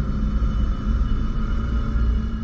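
Low, steady rumbling drone with a few faint held high tones: an ambient sound bed under the narration.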